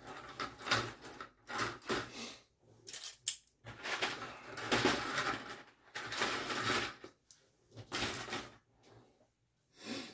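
Plastic model-kit sprues being rummaged through and handled, giving a run of irregular clattering and rustling bursts as one sprue is pulled out of the kit box.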